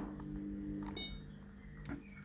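Three soft clicks about a second apart as the buttons of a wall-mounted Samsung heat pump controller are pressed, over a faint steady low hum.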